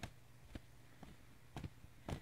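A cloth being waved to fan freshly applied wax dry, giving short soft swishes about twice a second that are faint at first and grow stronger near the end.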